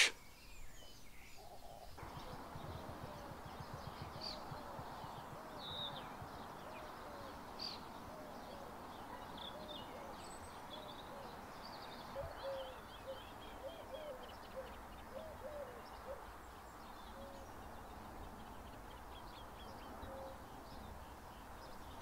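Faint wetland birdsong with many short high chirps and twitters, starting about two seconds in, and a run of short, low hooting calls repeated through the middle.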